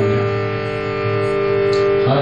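Harmonium sounding a steady held chord, with no singing over it.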